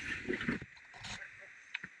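Skis sliding on groomed snow with wind on the microphone. The hiss fades about half a second in to a quieter glide, and there is a short sharp click near the end.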